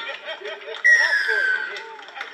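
A single loud whistle blast, about a second long, starting sharply and sliding slightly down in pitch, over the chatter and laughter of spectators' voices.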